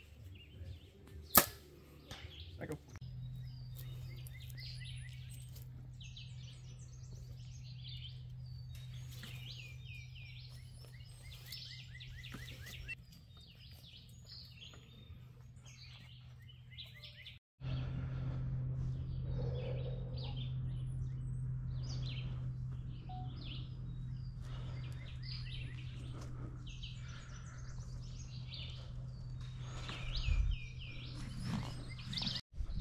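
A compound bow shot about a second and a half in: one sharp crack as the string is released. Birds chirp and sing throughout, over a steady low hum, with a brief drop-out just past the middle.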